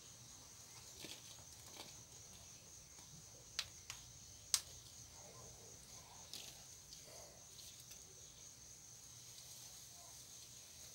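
Faint, steady, high-pitched chirring of insects, with a few soft clicks about three and a half to four and a half seconds in from hands handling seedlings in plastic cups of soil.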